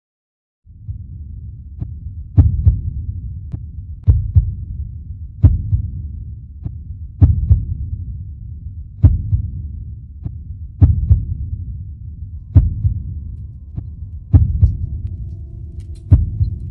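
Slow, regular heartbeat-like thumping: a heavy thump followed closely by a lighter one, repeating about every second and three quarters over a low, steady rumble. It starts after a brief silence.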